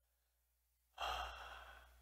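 A man's single audible breath close to the microphone, starting about a second in after near silence and fading away over the next second.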